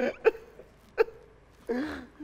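Stifled laughter: a few short, breathy bursts with a longer one near the end.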